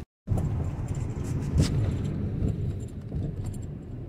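Car cabin noise while driving: a steady low road rumble with small rattles and clicks and one louder knock about a second and a half in. The sound cuts out briefly at the start.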